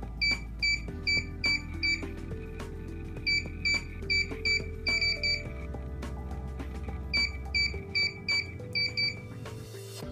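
Keypad of an EMTEK electronic keypad lever lock beeping once for each button press, in three runs of short, high beeps at about three a second while a code is keyed in. Background music plays underneath.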